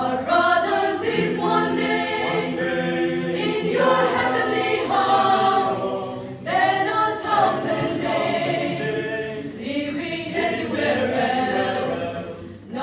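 Mixed choir of women's and men's voices singing a hymn in harmony under a conductor. The voices pause briefly about six seconds in and come back in together.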